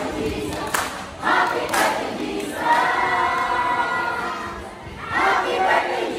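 A large group of voices chanting and shouting in unison, with sharp hits between the early phrases and one long held group note in the middle.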